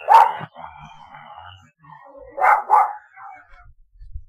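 A dog barking: one bark at the start, then two quick barks in a row about two and a half seconds in.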